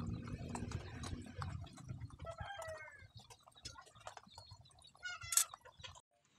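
Light clinks and scrapes of a spoon against cookware, with a short animal call about two seconds in and a louder, sharper animal call near the end.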